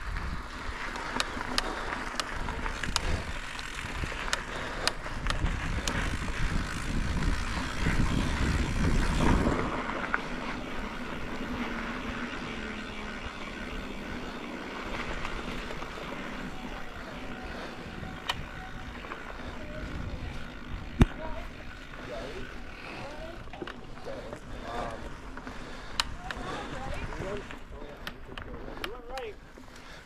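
A mountain bike ridden along dirt singletrack, heard from the handlebars: a low rumble of tyres and frame with scattered clicks and knocks. It is heaviest for about the first ten seconds on the bermed descent, then lighter on the flatter trail.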